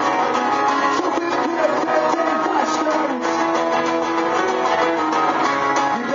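Acoustic guitars strumming a song, played live.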